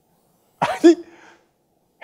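A man clears his throat once, a short voiced cough a little over half a second in that fades within about half a second.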